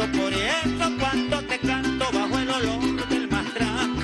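A man singing a Venezuelan llanero song into a microphone, holding a long note that bends up and down near the start, over a steady rhythmic musical accompaniment.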